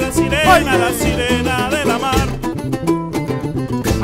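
Live band playing a Latin American folk song: a man singing over fast-strummed small guitars and bass guitar, with the strumming strokes clearest in the second half.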